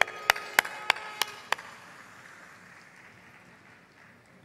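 A crowd clapping in unison to the beat, about three claps a second, stopping after about a second and a half, then the sound fading away.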